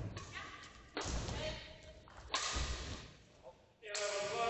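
Badminton rally in a sports hall: rackets striking the shuttlecock and players' feet landing on the court, with two sharp thuds, one about a second in and one just past two seconds, ringing in the hall.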